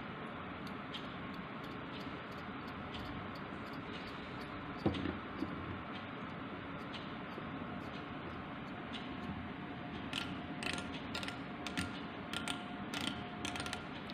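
Micrometer's ratchet stop and thimble being turned to screw the spindle down: light, scattered clicks, coming quickly in the last few seconds as the spindle seats against the workpiece and the ratchet slips at its set measuring force.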